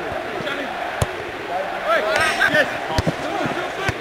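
Football kicked during play: three sharp thuds, about a second in, about three seconds in and once more just before the end, with players shouting between them.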